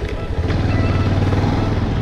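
Motorcycle engine running at a steady cruise, a constant low hum under wind and road noise from riding at speed.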